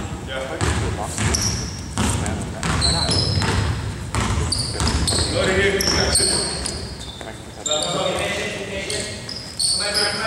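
A basketball game on a hardwood gym floor: the ball bouncing in repeated thuds and sneakers squeaking in short high chirps, with players' voices, all echoing in a large hall.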